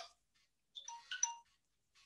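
A faint electronic notification chime, two short beeps about half a second apart.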